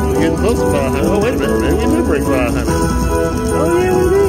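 Dancing Drums slot machine's win celebration music with jingling coin sound effects as the bonus win meter counts up, over casino background noise.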